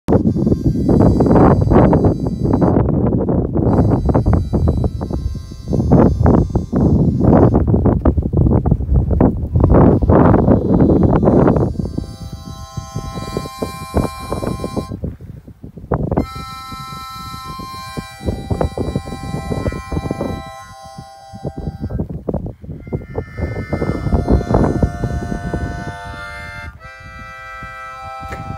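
Loud, irregular wind buffeting on the microphone for about the first twelve seconds. Then a free-reed instrument starts playing held chords and notes in short phrases with brief gaps.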